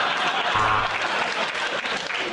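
Studio audience applauding, dense and steady, dying down near the end.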